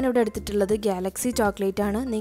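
Background music with a high, voice-like sung melody that repeats in an even pulse, with light percussion ticks.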